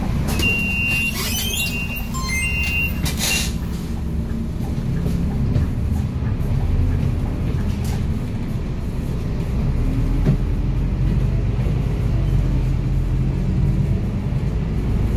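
Inside a city bus: three short electronic warning beeps in the first three seconds and a sharp knock just after them, then the bus's steady low running rumble and road noise as it drives on, the rumble growing louder about ten seconds in.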